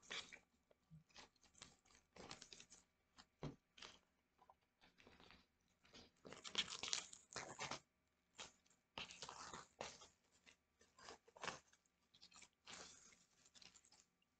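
Crinkling and rustling of a vinyl record set's packaging being handled, in irregular bursts of varying length, the longest and loudest a little past the middle.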